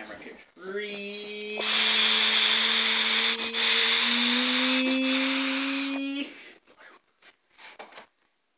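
A person's long, strained held cry, slowly rising in pitch, with a loud hiss over most of it. Both stop suddenly about six seconds in.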